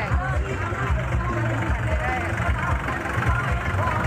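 A small farm tractor's diesel engine running close by, with people talking around it and procession music in the background.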